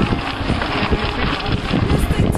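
Wind buffeting the microphone of a camera carried on a moving mountain bike, with the bike rattling and knocking over rough dirt trail.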